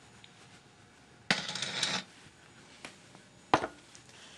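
Kitchen handling sounds: a mixing bowl is set down with a clatter and a short scrape about a second in, then a single sharp knock near the end as a utensil is picked up.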